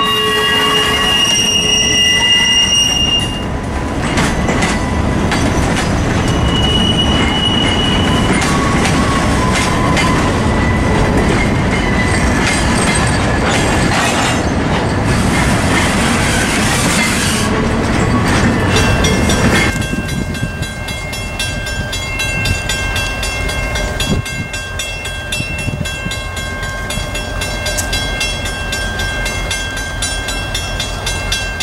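Norfolk Southern EMD GP38-2 locomotive and its freight cars rolling past at close range, with steel wheels squealing against the rail in brief high-pitched bursts near the start and again about seven seconds in. About twenty seconds in, the rumble drops as the train moves away, leaving fainter steady high tones and light ticking.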